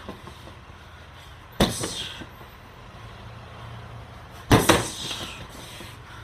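Two hard gloved strikes landing on a freestanding heavy bag, about three seconds apart. Each is a sharp thud with a brief tail.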